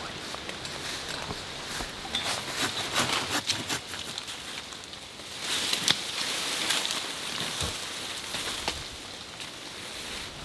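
Leaves and branches rustling with scattered light clicks and knocks from climbing gear while a tree stand is hung.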